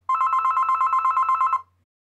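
Telephone ringing: one ring about a second and a half long, a fast trill of two steady tones that stops suddenly.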